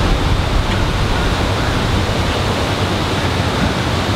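Wind buffeting the microphone: a steady, loud rushing rumble, heaviest in the low end.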